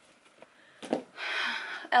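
A few soft knocks of books being pulled from a low shelf and set down on a wooden floor, followed by a breathy exhale lasting about half a second.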